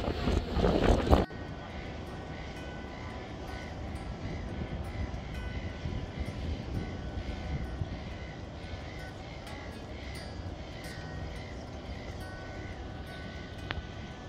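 Loud wind and rumble from filming on a boat on the water for about the first second, cut off abruptly. It is followed by a much quieter, steady outdoor city ambience with faint steady tones.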